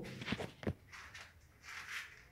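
Faint handling clicks and scuffs, with one sharper knock about two-thirds of a second in and a soft rustle near the end, as a hand-held phone camera is moved.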